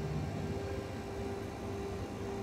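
Steady background hum with a low rumble, one constant tone running throughout and nothing sudden.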